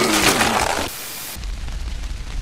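A man's loud, gushing vomiting sound, a retching voice falling in pitch over a splattering rush, which stops about a second in. After a brief lull a deep, steady rumble sets in.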